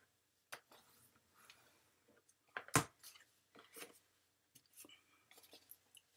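Sheet of cardstock being creased by hand along a diagonal fold and opened out: soft rustles and scrapes of paper, with scattered light clicks and one sharp click about three seconds in.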